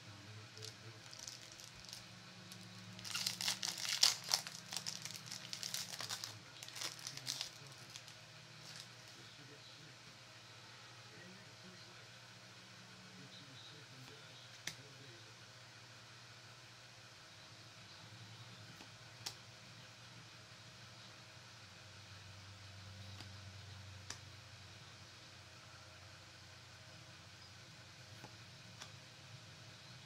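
A Yu-Gi-Oh booster pack's foil wrapper is torn open and crinkled for about five seconds, starting about three seconds in. After that there is only a faint steady hum and a few soft clicks as the cards are handled.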